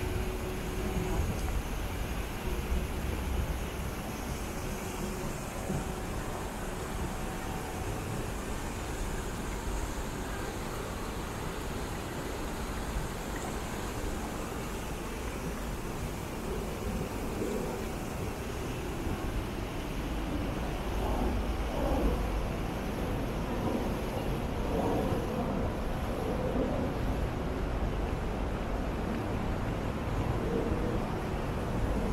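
Steady city ambience: a continuous hum of road traffic with low rumble. Faint voices of passers-by come through in the second half.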